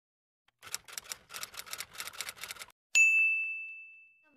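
Typewriter sound effect: a quick run of key clacks for about two seconds, then a single bell ding about three seconds in that rings on and fades.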